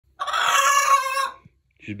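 A hen squawking loudly: one long, harsh call lasting a little over a second.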